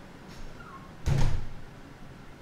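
A single dull thump about a second in, short and heavy.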